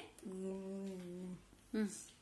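A woman's voice humming one long, steady note for about a second, then a short falling vocal sound near the end.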